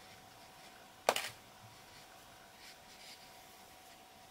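A single sharp clack about a second in, as a bamboo knitting needle is laid down on a tabletop, followed by faint soft rustles of wool yarn being handled.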